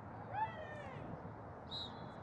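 A distant high-pitched shout from a player, one call whose pitch rises and then falls about half a second in, over open-air background noise. Near the end comes a short, steady, high whistle-like tone.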